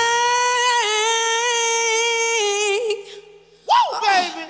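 A woman singing one long, high, belted note with vibrato, held for about three seconds and then released: the closing note of the song. Shortly before the end comes a brief rising-and-falling vocal whoop.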